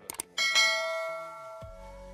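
Subscribe-button sound effect: two quick mouse clicks, then a bright bell ding that rings out and fades over about a second.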